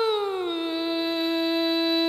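Female vọng cổ singing voice holding the end of a phrase: the long note slides down in pitch over about half a second, then holds steady on a lower note.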